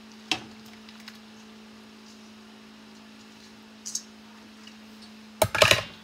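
Steady low hum with a light knock just after the start and a faint click later, then a loud burst of clattering and handling noise near the end.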